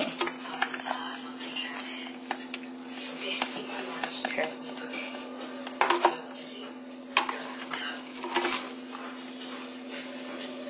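Scattered light taps and clicks of pizza toppings and a baking sheet being handled, a small cluster of knocks about six seconds in, over a steady low hum.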